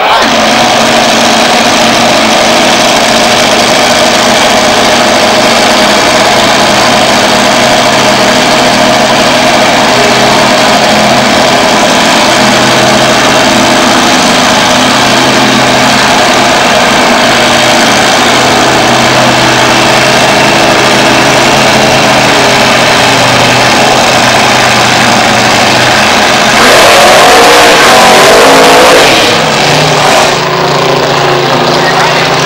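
Nitro drag-racing car's engine running at a steady idle, then about 26 seconds in it revs up into a louder burst of a few seconds, the burnout at the start line, before its pitch falls away.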